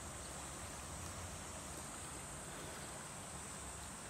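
Steady, high-pitched chorus of insects buzzing, unchanging throughout, with a faint low background hum.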